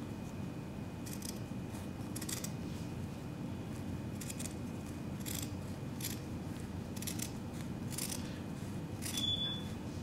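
Scissors snipping into a hoodie's sweatshirt fabric: a dozen or so short, separate cuts at an uneven pace, nicking the cloth to fray and distress it.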